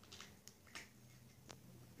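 Near silence with a few faint, scattered clicks from a cat eating out of a plastic bowl.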